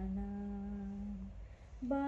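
A woman singing a Malayalam Vishu devotional song unaccompanied, holding one long low note that fades out a little past a second in; the next phrase begins just before the end.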